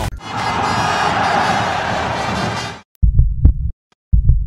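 A steady rushing noise that fades out just before three seconds in. After a short gap, a loud, low double thud comes, a lub-dub like a heartbeat: the opening beat of the closing logo animation's sound effect.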